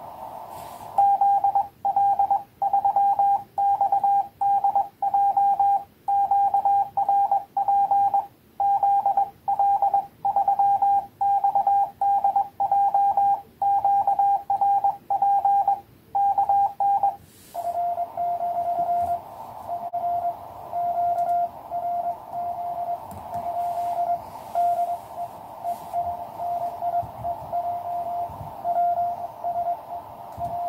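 Morse code (CW) on a QCX mini 5 W transceiver. From about a second in, the station's own keyed sending is heard as a loud, clean sidetone for about sixteen seconds. From about 17 s in, a weaker, slightly lower-pitched Morse signal comes in over the receiver's narrow-filtered hiss.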